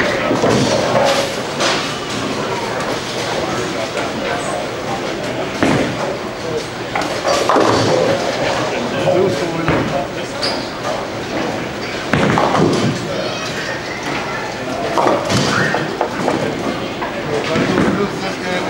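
Bowling alley sound: a steady murmur of many voices, broken several times by the thud and clatter of bowling balls and pins on the lanes, echoing in the large hall.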